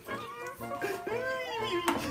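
A man's drawn-out wordless vocal sounds, pitch sliding up and down like a meow, with a sharp click near the end.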